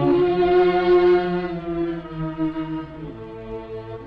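Background film music on bowed strings, led by violin, holding long notes and moving to a new chord about three seconds in.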